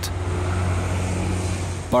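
Street traffic, with a city bus and cars passing close by and a steady low engine hum.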